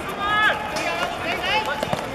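Players' voices shouting and calling out short calls during a hard-court football match, with a few sharp knocks near the end.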